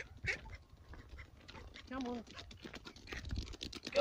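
Quick, irregular footsteps crunching on a gritty concrete path, a run of light clicks throughout.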